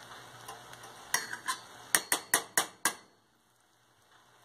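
A spoon knocking and scraping against a stainless steel pot while scooping cooked rice and split peas: a few light clicks, then a quick run of about six sharp taps.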